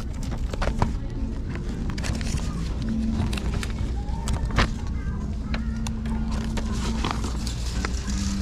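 Handling noise from a paper folder being opened and moved about: rustling with scattered light clicks and knocks, over a steady background of store music and hum.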